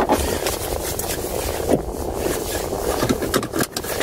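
Car running, heard from inside the cabin as it gets under way: a steady rumble and rushing noise with a few short knocks and clicks, most of them near the end.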